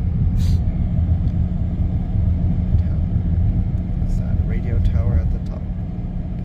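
Steady low tyre and road rumble with wind noise inside the cabin of a Tesla Cybertruck cruising on the interstate; being electric, it has no engine note.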